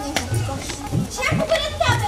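Several voices calling out and shouting over one another, with no clear words.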